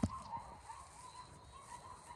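A faint, wavering chorus of distant dogs from neighbouring kennels, which sound like they are being fed.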